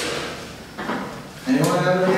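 A sharp knock right at the start, then a person's voice holding a drawn-out syllable from about one and a half seconds in.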